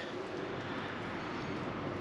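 Steady outdoor background noise: an even hiss and rumble with no distinct events.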